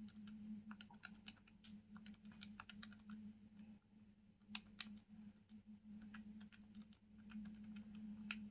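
Faint, irregular clicks of keys being pressed on a Casio fx-82ES PLUS scientific calculator, one after another as a sum is keyed in, over a low steady hum.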